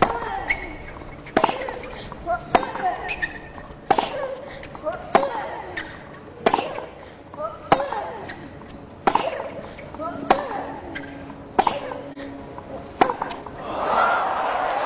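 A long baseline tennis rally on a hard court: about ten racket strikes on the ball, spaced about every second and a quarter, with ball bounces and short vocal sounds between the strokes. Crowd applause breaks out right at the end as the point finishes.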